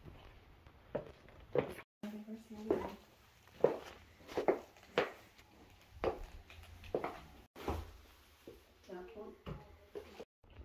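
Quiet, indistinct voices in a small room, broken by a string of short knocks about once a second.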